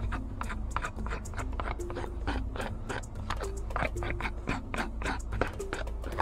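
A small knife scraping and flaking diseased, canker-infected bark off a pear tree trunk, in a quick irregular run of short scrapes and crunches.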